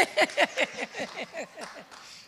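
A woman laughing, a run of short "ha" pulses about five a second that grows fainter and trails off near the end.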